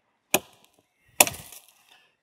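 Two axe chops into a felled tree's branches as it is limbed: a short strike about a third of a second in, then a louder strike a second later with a brief ringing tail as the branch is cut through.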